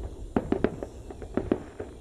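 Fireworks going off: an irregular run of sharp pops and cracks as shells burst and crackle.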